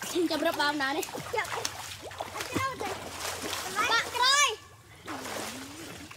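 Children splashing and playing in water, their high shouts and calls mixed with splashes; the loudest is one long, high rising-and-falling shout about four seconds in.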